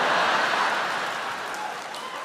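Large audience laughing and applauding after a punchline, the crowd noise loudest at the start and slowly dying away.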